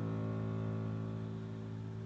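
Bowed double bass holding one low note that slowly fades.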